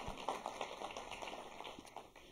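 Faint audience response in a theatre: scattered clapping and murmuring from the crowd, fading away.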